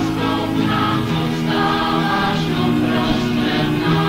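A church schola choir singing a Slovak Christian song, several voices holding notes in harmony, from an old 1980s recording.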